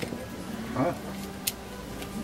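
Hinged wire grill basket being closed over fish steaks, giving one light, sharp metallic click about one and a half seconds in, over a faint steady low hum.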